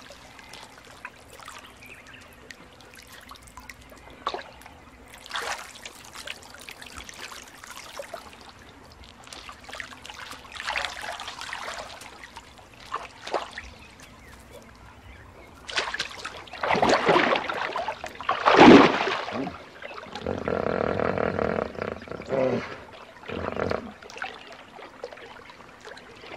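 Water splashing and sloshing in a shallow pool, in scattered bursts, with the loudest splashes a little past the middle. Right after them an animal gives a pitched call lasting about two seconds.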